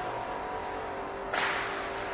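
Forklift engine running steadily. About a second and a half in, a sudden scraping rush begins as its tall load of concrete blocks on pallets starts to topple off the forks.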